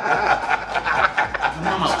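Several men chuckling and snickering, with some overlapping talk.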